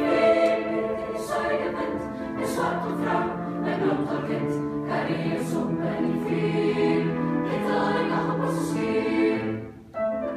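Large mixed school choir of girls and boys singing sustained chords, with crisp 's' consonants sounding together every second or so. The singing dips away briefly near the end.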